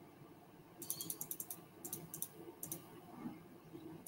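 Faint rapid computer mouse clicks, several a second, in three short runs starting about a second in.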